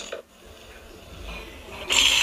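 Phone speaker playing a sink-drain cleaning clip: a faint hiss that slowly grows, then a loud rush of water into the drain starts right at the end.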